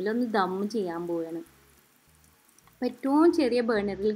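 A woman's voice speaking in two phrases, with a quiet pause of about a second and a half between them. No sound from the pot or spatula stands out.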